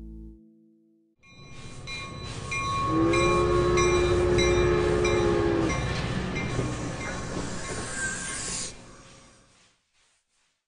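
A fiddle note cut off about half a second in. After a short gap comes a rumbling, hissing noise with a few thin steady high tones. A held horn-like chord of three tones sounds from about three to six seconds in, and the noise fades out near the end.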